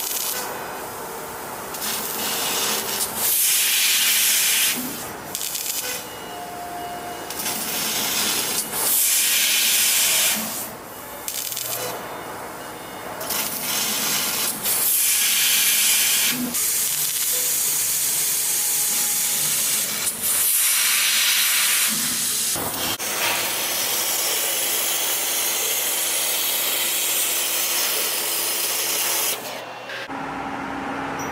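OREE fiber laser cutting head hissing with its assist gas while cutting countersunk holes in thick steel plate. The hiss comes in about five bursts of two to six seconds, with quieter stretches between, the last and longest stopping just before the end.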